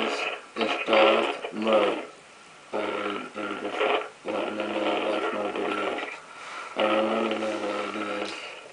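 A voice speaking in short phrases through a Darth Vader mask's voice changer: deep and electronically distorted, with a steady buzz under each phrase.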